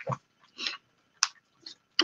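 Quiet handling noises of a tape-wrapped parcel: a short rustle about half a second in, then a single sharp click and a fainter tick near the end.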